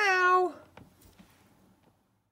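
A woman's voice drawing out the last word of a sing-song farewell, "bye for now", its pitch rising and then holding, ending about half a second in. Near silence with a few faint clicks follows.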